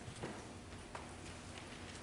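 Quiet room tone with a few faint, soft knocks and clicks, the clearest about a quarter second in and again near one second, with light rustling: people shifting and handling papers.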